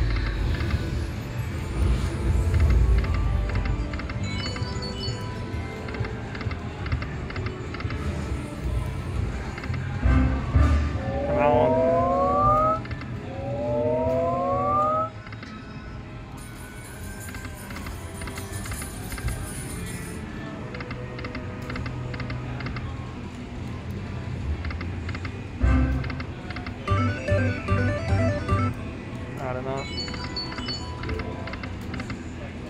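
Buffalo Gold slot machine sounds as the reels spin: electronic game music and chimes, with two rising electronic tones about halfway through and a run of quick chimes near the end.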